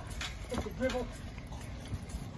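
Trampoline mat thumping in an uneven rhythm as several people land on it, with a brief voice about half a second in.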